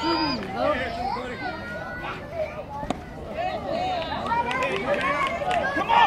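Many overlapping voices of spectators and young players calling out across the field, getting louder and busier in the second half.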